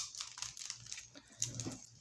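Faint crinkling and scattered small clicks from a small clear plastic bag of konpeito candy being handled.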